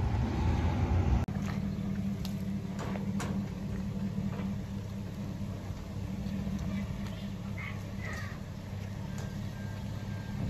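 Pickup truck engine idling steadily with a low, even hum, joined by a few light clicks.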